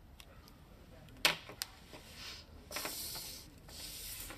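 Pen on a paper statement form, with a sharp tap about a second in, then a sheet of paper sliding and rustling across a table in a small room.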